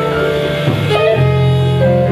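Small jazz band playing live: alto saxophone on long held melody notes over piano and electric bass, the notes shifting pitch a few times.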